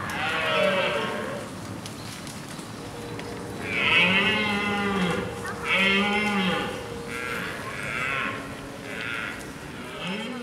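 Red deer stags roaring during the rut: a call near the start, a long roar about four seconds in, then a run of shorter roars, each rising and falling in pitch.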